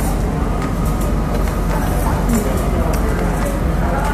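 Busy restaurant room noise: a steady low hum under a haze of diners' background chatter, with a few faint clicks.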